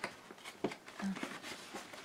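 Cardboard mailer being picked at and pulled open by hand: faint scratching and rustling with a few short clicks of the card.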